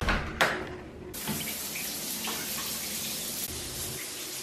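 Shower running: a steady spray of water that starts about a second in, after two brief knocks.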